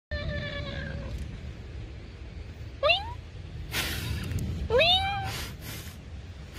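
A cat meowing three times: a level call at the start, a short upward-sliding meow about three seconds in, and a longer meow that rises and then holds about five seconds in. Short bursts of noise come between the later calls.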